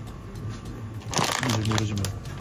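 Plastic potato-chip bag crinkling as it is pulled off a shelf and handled, starting about a second in.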